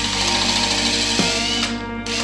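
Power drill running as it bores into a wooden guide block, under background music; the drill stops near the end.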